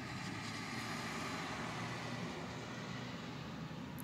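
Steady low background noise, a faint hum and hiss with no distinct events.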